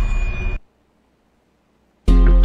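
Tail of a loud dramatic music sting with a boom, cutting off suddenly about half a second in, then dead silence.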